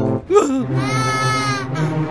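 A cartoon child character crying: a high-pitched wail that rises and falls, lasting about a second, then a shorter second wail near the end, over steady background music.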